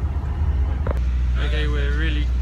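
Steady low rumble inside a diesel train carriage, with a short click a little before halfway. A man starts speaking in the second half.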